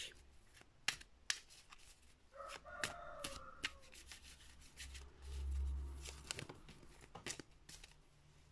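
Faint rubbing and scattered clicks of a tarot deck being handled and shuffled by hand. A brief pitched call sounds faintly about two and a half seconds in, and a low rumble follows around five seconds in.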